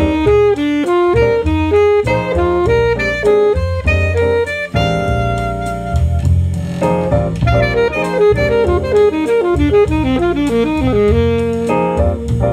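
Alto saxophone playing quick runs of eighth-note triplets built from alternating F major and G major triads (a triad-pair pattern), over a jazz backing track with bass and drums.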